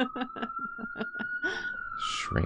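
An emergency vehicle siren wailing: one tone gliding slowly up and then beginning to fall near the end.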